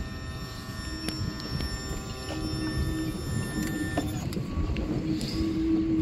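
Electric power-tilt motor of a Honda outboard whining steadily at one pitch as it lowers the engine into the water, stopping about four seconds in. Wind rumbles on the microphone underneath.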